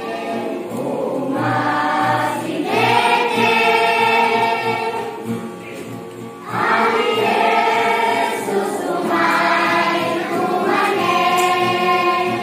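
A church choir of children and teenagers singing a hymn together, with long held notes. Two phrases, with a short break for breath about halfway through.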